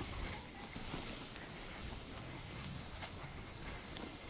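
Faint, steady hiss of skis sliding over snow.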